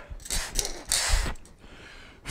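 A plastic incentive spirometer being handled and raised to the mouth: two short rustling bursts, the second about a second in with a low thump, then quieter.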